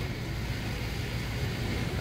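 Steady low hum of an outdoor air-conditioning condenser unit running, under a faint outdoor background hiss.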